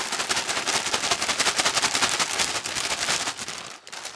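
Foil chip bag shaken hard upside down, a rapid crinkling rattle of the bag and the chips inside, stopping suddenly a little before the end.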